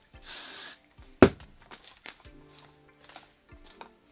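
A short hiss of an aerosol hairspray spritz lasting about half a second, followed about a second in by a single sharp click, the loudest sound. Faint background music and light rustling of the wig hair.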